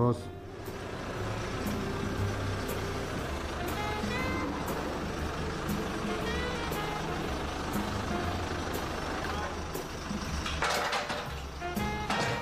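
Diesel engine of a telehandler running steadily as it lifts a pallet of empty beer kegs onto a lorry, with a faint tick about once a second.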